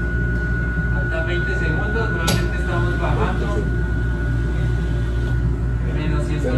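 Cryotherapy cabin running with its chamber at about −165 °C: a steady low machine drone, with a thin steady high tone that stops about five seconds in. A single sharp click comes a little after two seconds.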